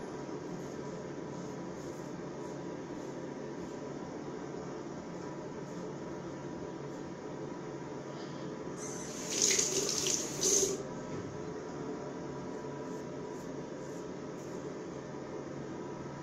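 Tap water running and splashing into a bathroom sink for about two seconds, midway, during rinsing while shaving, over a steady low room hiss.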